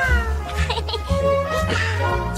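Background music under a high, cartoon-style Pikachu voice: a cry that slides down in pitch at the start, then a few short cries.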